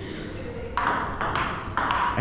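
Table tennis rally: the plastic ball clicking off rubber-faced bats and bouncing on the table, a few sharp knocks in quick succession from about a second in.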